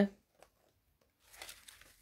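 A stiff black paper page of a photo album being turned: a brief paper rustle a little over a second in.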